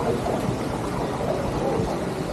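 Wind buffeting the microphone as a steady, uneven rumble, with faint voices in the background.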